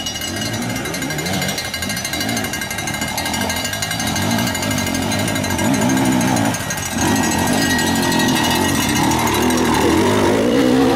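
Enduro dirt bike engines revving unevenly under load as they pick their way over rocks, the nearest bike getting louder as it comes close about halfway through.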